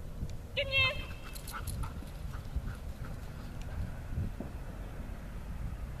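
A short, loud shouted command to a dog about half a second in, followed by a few faint sharp ticks and a low wind rumble on the microphone.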